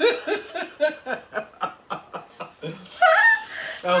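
Laughter: a run of short, quick laughs, about four a second, followed by a high, rising voice sound near the end.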